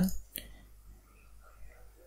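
Quiet room tone with a single sharp computer-mouse click about a third of a second in, and faint breathy sounds after it.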